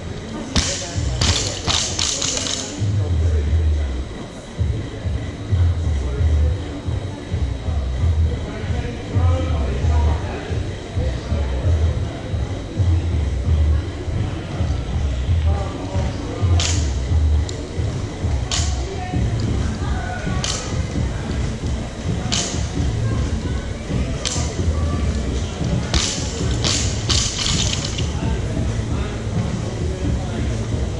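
Barbell reps: a loaded barbell and its plates give a series of sharp clinks about two seconds apart, with dull thumps beneath, over background music in the gym.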